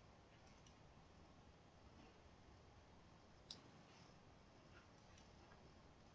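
Near silence: faint room tone, with a single short click about three and a half seconds in.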